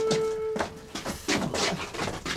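A held note of background music that stops about half a second in, followed by scattered scuffs and knocks from men shuffling and manhandling a heavy log.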